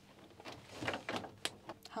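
Faint handling noises: rubbing and rattling as a plastic oil-extraction tube is fed down an engine's dipstick tube, with a couple of sharp clicks near the end.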